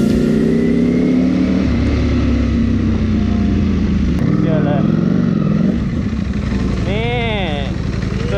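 Motorcycle engine running steadily at idle, easing a little about six seconds in, with a short voice near the end.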